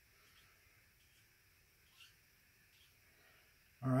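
Near silence: room tone, with one faint short tick about halfway through.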